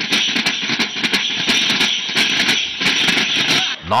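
Tappeta Gullu folk performance: tappeta frame drums, round metal-sheet drums held against the chest, beaten in a dense fast rhythm, with ankle bells jingling and voices over it. It stops just before the end.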